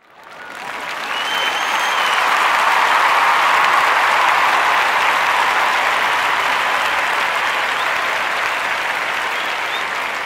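Audience applauding, starting suddenly, swelling over the first couple of seconds and then slowly tapering off, with a short whistle from the crowd about a second in.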